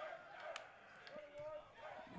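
Faint ballpark ambience: distant voices from the field or stands, with a light click about half a second in.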